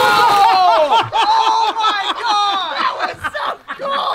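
Several men whooping and laughing excitedly in reaction to an underwater dry ice bomb blast. Spray from the blast splashes back onto the pool surface in the first half-second, and quick bursts of laughter fill the middle.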